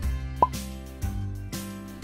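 Gentle plucked-string background music, a new note about every half second. About half a second in, a single short rising plop, like a pop sound effect, is the loudest sound.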